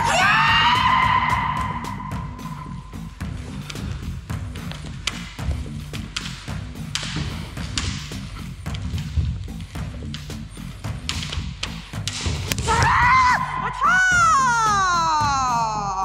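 Background music with a steady low beat over kendo practice: a long held kiai shout at the start, thuds from shinai strikes and stamping footwork on the wooden floor, and another kiai shout near the end that rises and then falls away in pitch.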